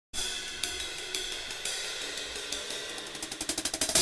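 Jazz drum kit cymbals struck at an even pace, their ring hanging on between strokes. In the last second the strokes quicken into a roll that grows louder.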